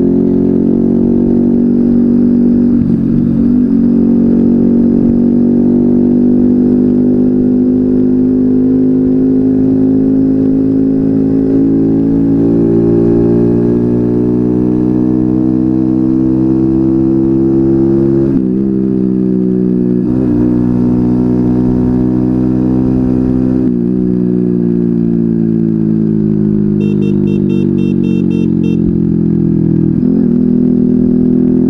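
Small four-stroke moped engine running under way. Its pitch climbs slowly as the bike picks up speed, breaks briefly a few times, then falls near the end as it slows.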